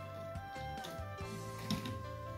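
Soft background music with long held notes, and a few faint clicks from a wire being worked into a timer relay socket's screw terminal, the clearest near the end.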